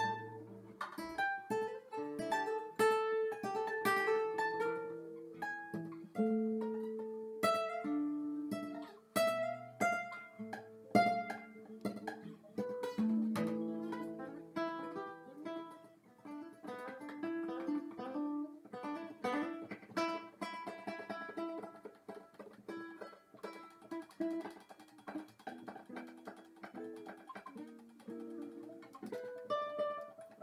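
Solo acoustic guitar played fingerstyle: plucked single notes and chords ringing on in an instrumental piece, with quicker, denser picking in the later part.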